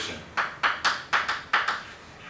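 Chalk writing on a chalkboard: a quick series of about eight sharp taps and scrapes as the letters are stroked out.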